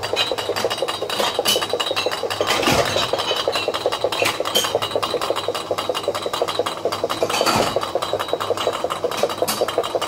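A 0.33 l returnable glass fritz-kola bottle spins in place on a bottle-return table's conveyor belt. It stands only partly on the belt and is not wedged tight among the other bottles, so it rattles against its neighbours in a fast, even, continuous glass chatter, with a few louder clinks.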